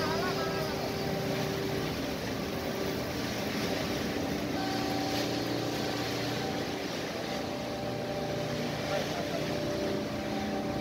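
Steady drone of shipboard machinery, the deck crane working as it hoists a sling of bagged cargo. Several steady tones run under the drone, their pitch shifting about four and a half seconds in.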